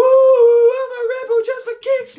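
A man's voice singing alone with the guitar stopped: one long high note held for most of the first second, then wavering through a run of shorter notes.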